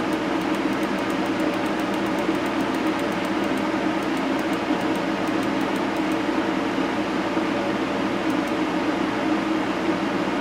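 Steady mechanical hum filling a small room, even and unchanging, with a low drone under a hiss.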